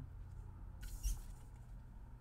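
Tarot cards handled on a wooden tabletop: a few faint, short sliding and rustling sounds of card stock, the clearest about a second in, over a low steady hum.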